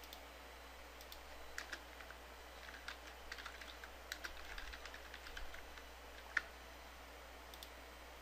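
Soft typing on a computer keyboard, a run of faint keystrokes, with one sharper click about six seconds in.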